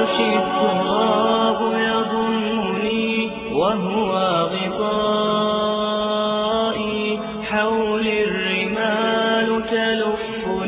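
Arabic nasheed in a wordless passage: voices hold long sustained notes, with sliding vocal runs about three and a half seconds in and again near eight seconds.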